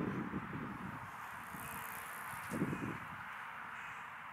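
Faint open-air background noise, steady and even, with one brief low sound a little past halfway.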